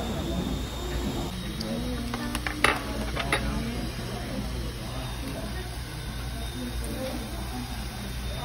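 Restaurant table ambience: a steady low hum under a murmur of voices, with a few sharp clinks of tableware about two and a half to three and a half seconds in, one of them the loudest sound.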